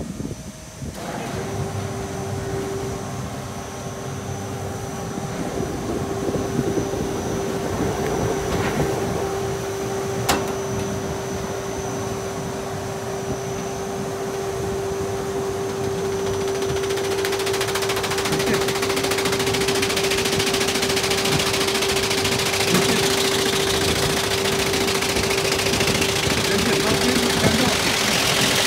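An automatic flatbed rug beating and de-dusting machine starts up about a second in and runs with a steady hum from its motors and spinning beater shafts. From about 17 s a loud rattling hiss is added and grows, as the rug is fed in and beaten.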